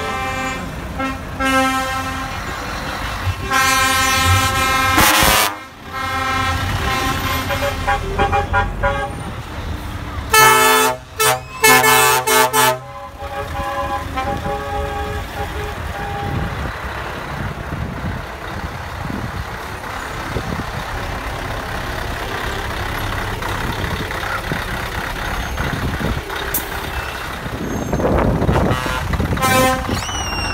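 A convoy of heavy trucks sounding their air horns in the first half: held blasts, then several short toots about ten seconds in. After that come the steady diesel engines and tyres of tractor units passing close by.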